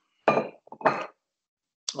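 Two brief clinks of tableware, such as dishes or cutlery being handled, heard over a video-call microphone that cuts each one off abruptly.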